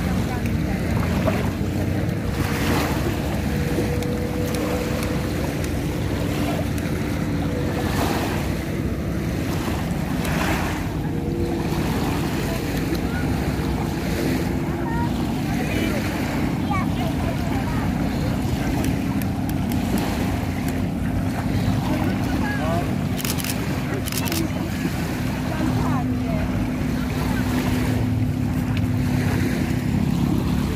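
Small waves lapping on a sandy lakeshore, with wind buffeting the microphone in a steady low rumble.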